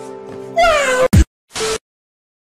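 A cat's single drawn-out meow, falling in pitch, over a few faint steady music notes; a sharp click and a short second sound follow before it cuts to silence.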